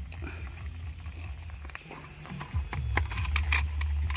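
Screwdriver backing small screws out of a plastic antenna waveguide housing, with a few sharp clicks near the end, over a steady low rumble and a steady high whine.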